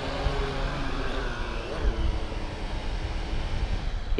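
Syma X8HG quadcopter's brushed motors and propellers whirring as it comes down with the throttle held low, under low wind rumble on the microphone.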